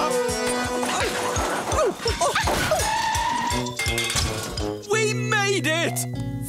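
Background music with a steady beat, mixed with a rushing cartoon sound effect and gliding pitches in the middle, and wavering, voice-like cries near the end.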